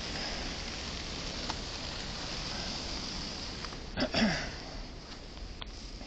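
Steady street hiss of traffic on a snowy, slushy road, with a short sniff close to the microphone about four seconds in and a few faint clicks.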